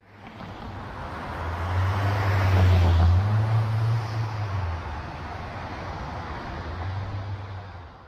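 A motor vehicle passing on the street: a low engine hum and road noise that swell to a peak about two to four seconds in and then fade, with a fainter hum returning near the end.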